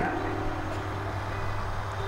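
A steady low electrical hum with faint background noise from a public-address system between words.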